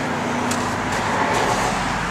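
Steady rushing noise of road traffic, with a light click about half a second in.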